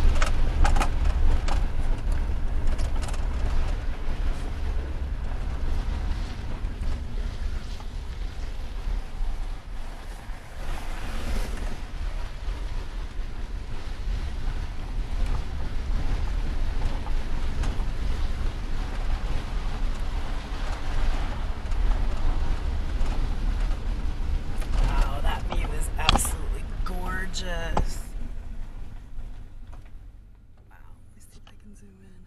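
Inside a truck cab while driving slowly on a dirt road: a steady low rumble of engine and tyres with rushing wind-like noise.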